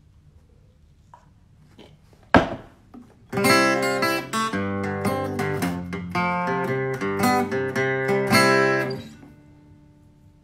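A single sharp knock, then an acoustic guitar strummed for about six seconds, several chords ringing in turn before dying away near the end.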